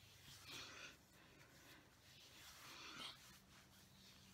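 Near silence, with two faint soft breaths: one about half a second in and one near three seconds.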